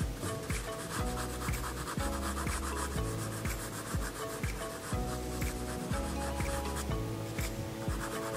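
Graphite pencil scratching across drawing paper in repeated short strokes, with soft background music of held notes underneath.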